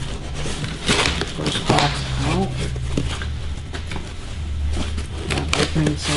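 Cardboard boxes being handled: a small box lifted out of a larger shipping box, with repeated scraping, rubbing and light knocks of cardboard against cardboard.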